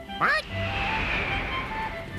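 Film soundtrack music, with a short loud pitched cry that dips and rises in pitch near the start, followed by a hissing whoosh lasting over a second.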